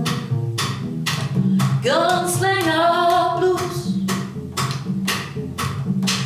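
Upright double bass played in a swinging blues rhythm, each plucked note landing with a sharp percussive click, about two a second. About two seconds in, a woman's voice sings one long note that slides up and holds for about two seconds over the bass.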